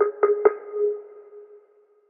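Background electronic music: a held tone with three quick hits at the start, fading out about a second and a half in.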